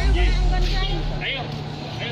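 People's voices talking, over a low steady hum.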